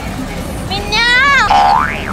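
A high-pitched voice squealing on a carnival ride, its pitch rising and falling, then breaking into a quick upward whoop that drops away. Steady background noise runs underneath.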